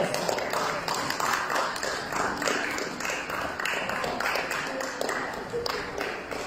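Crowd noise: people talking, with scattered claps and taps.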